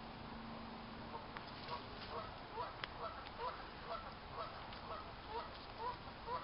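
Geese honking: a run of short calls, about two a second, starting about a second in, with a few faint clicks among them.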